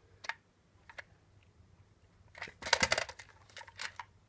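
Hard plastic clicks and knocks from a toy robot being handled, its jointed parts turned: a few single clicks, then a quick run of clicks about two and a half seconds in.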